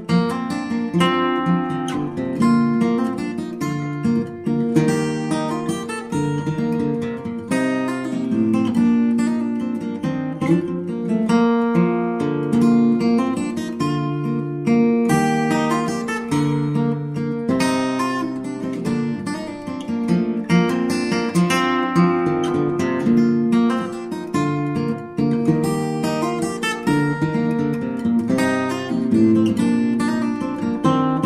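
Background music: an acoustic guitar playing continuously, plucked and strummed notes.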